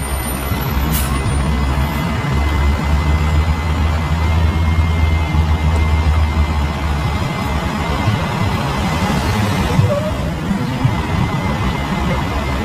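Loud street traffic noise, with a heavy vehicle's engine running close by as a steady low rumble that eases off about seven seconds in.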